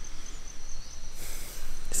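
An insect's steady, high-pitched, finely pulsing chirr over faint low outdoor rumble, with a brief burst of hissing noise just past halfway.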